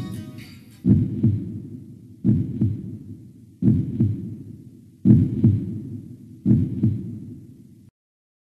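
A low double thump in a slow heartbeat rhythm, closing the song. It repeats about every second and a half, five times, each beat dying away, and cuts off abruptly near the end.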